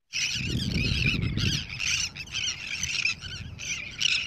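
A flock of birds screaming, many squawking cries overlapping at once, with a low rumble under them for the first second and a half.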